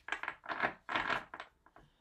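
Hand-shuffling a deck of tarot cards: several short papery rustles in quick, irregular succession.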